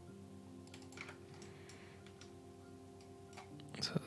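Faint clicks of a computer mouse and keyboard over a steady low electrical hum, with a louder short noise just before the end.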